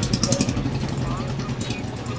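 A steady low engine hum of traffic, with faint voices and light clinks in the background.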